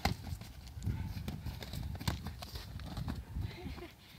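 Boxing gloves landing punches in a sparring bout, with a sharp smack right at the start the loudest, then a few lighter knocks and scuffling over a low rumble.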